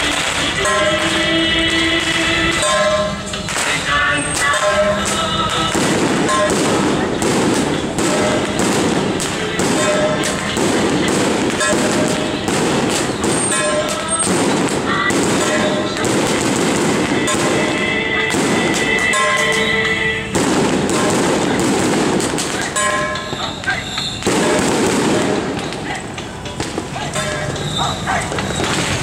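Strings of firecrackers crackling almost without pause, over loud procession music and crowd voices. The firecrackers are set off as the Mazu palanquin passes.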